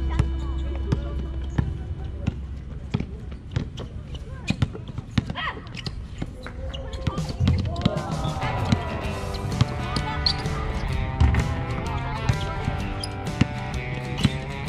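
A basketball bouncing on an outdoor hard court, heard as a run of short thuds with other knocks from the play. Voices call out, and music comes in about halfway through.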